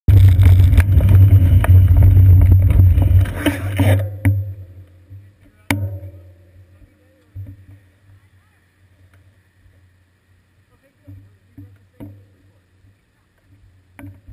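Loud wind buffeting and road rumble on a bicycle's seat-post camera while riding, dying away about four seconds in as the bike comes to a stop. Then it is quiet, with a few faint clicks and knocks.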